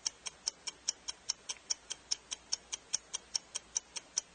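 Game countdown timer sound effect ticking steadily, about five sharp ticks a second, counting down a timed round.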